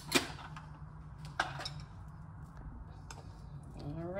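Kitchen handling sounds as the flour container is picked up and opened: a sharp click just after the start, another click or knock about a second and a half in, and a few faint ticks, over a steady low hum.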